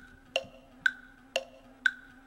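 Wood block in the music track struck evenly about twice a second, each strike ringing briefly like a clock tick, over a faint held low note.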